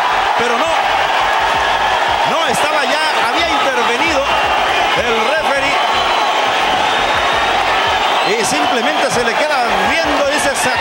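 Arena crowd cheering and shouting at a boxing knockout: a dense, steady wall of crowd noise with many overlapping voices calling out above it.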